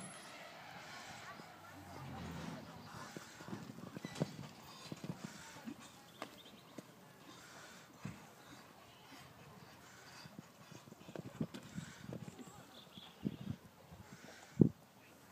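Faint hoofbeats of a horse cantering and jumping on sand arena footing, heard as scattered, irregular thuds, with low voices in the background.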